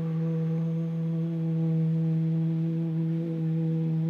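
A man's voice holding one long, steady sung note at a low pitch, ending right at the end.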